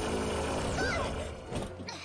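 Cartoon soundtrack: sound effects over held background music, with a short gliding tone about a second in, fading away near the end.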